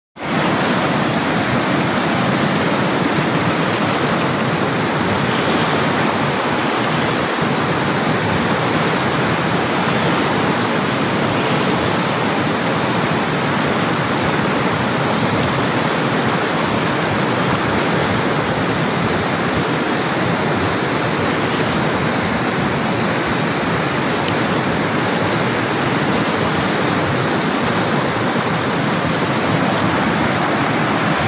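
Whitewater rapids of the Kunhar River rushing around boulders: a loud, steady rush of water.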